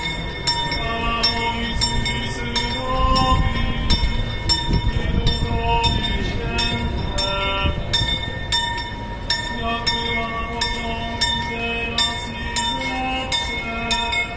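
Church bells pealing, with strikes about twice a second and the notes changing in pitch from strike to strike.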